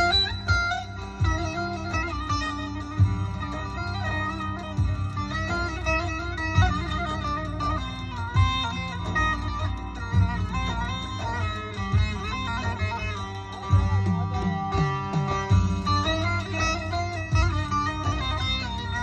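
Bağlama (Turkish long-necked saz) playing a plucked folk melody of quick notes as an instrumental introduction, over a steady low beat.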